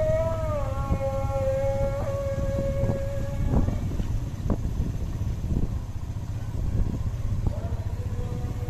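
Motorcycle running at low speed on a rough village lane, a steady low rumble throughout. A long, steady, high tone sits over it for the first three and a half seconds and returns briefly near the end.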